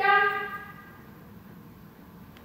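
A trainer's single drawn-out voice command to the dog, one held note that fades within about a second, the cue that takes the dog from a sit into a down at a distance.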